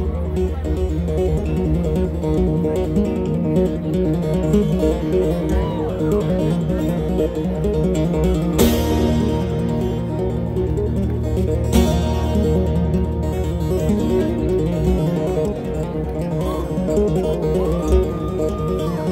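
Amplified live acoustic guitar music: rhythmic plucked guitar over held low bass notes that change every few seconds. Two sharp hits land about three seconds apart near the middle.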